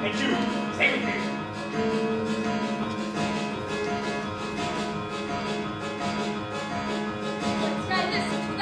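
Live pit band playing instrumental stage-musical music, with shorter notes over a low note held throughout.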